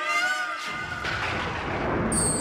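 A man's drawn-out call into a PA microphone ends in the first half-second. A loud, dense crowd shout follows: the audience answering the jaikara, the devotional victory call, with "jai".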